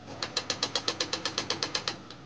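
Small portable sewing machine stitching a seam, its needle mechanism clicking in an even rhythm of about eight strokes a second. It starts just after the beginning and stops shortly before the end.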